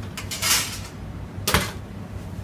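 Oven door under a commercial kitchen range opened with a brief scraping rush about half a second in, then shut with a sharp clack about a second and a half in. A steady low hum runs underneath.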